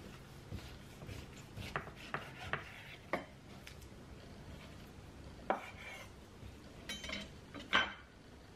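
Chef's knife slicing raw beef shank on an end-grain wooden cutting board: irregular sharp knocks and light scrapes as the blade meets the board, the loudest about five and a half seconds in and near the end.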